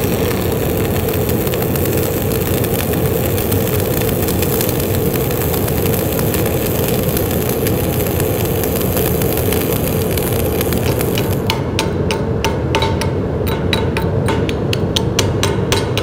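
Stick (SMAW) arc welding with an E6013 electrode at 120 amps: the arc crackles steadily for about the first eleven seconds over the steady drone of a fume extractor. Then the arc stops and a chipping hammer knocks slag off the weld bead, about four sharp strikes a second.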